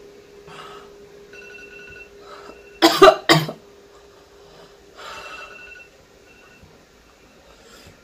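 A woman coughing twice in quick succession about three seconds in, her mouth burning from an extremely spicy lollipop, with softer breaths before and after.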